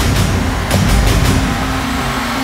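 Loud dramatic background score, dense and driving, with a deep rumbling low end.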